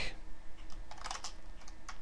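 Computer keyboard being typed on: a run of irregular keystroke clicks as a short word of code is entered.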